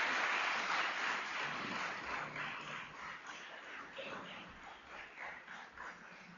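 Audience applauding, dense at first, then thinning to scattered claps and fading away.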